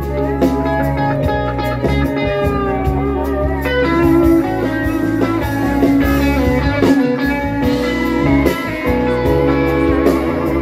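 Live rock band playing an instrumental passage, electric guitar to the fore over bass guitar and drums.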